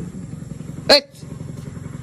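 A small engine running steadily with an even low pulse, with one short voice-like call about a second in.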